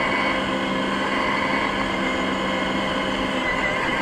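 Steady road and engine noise of a car being driven, an even rush with a faint constant hum underneath.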